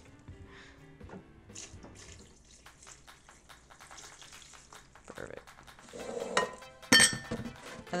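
Liquid pouring from a large bottle into a plastic blender jar, trickling and splashing onto the ingredients inside, with a sharp knock about seven seconds in, over soft background music.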